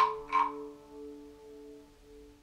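Two short croaking rasps about half a second apart from a wooden frog guiro scraped along its ridged back, over the last banjo chord ringing and dying away.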